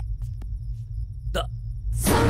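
A single short, sharp gasp about a second and a half in, over a steady low rumble with a few faint ticks.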